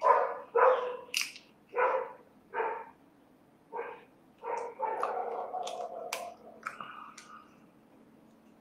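A dog barking: a string of short barks in the first half, then a longer drawn-out call lasting about two seconds.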